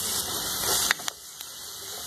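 Chopped onion and garlic sizzling in oil in a pot, a steady hiss, with a few light clicks of a spoon against the pot about a second in.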